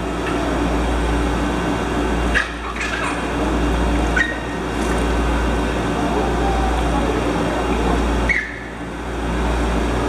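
Steady rushing of circulating water in a stingray touch tank, with a constant low pump hum. A few brief knocks break through, one about two and a half seconds in and one near four seconds.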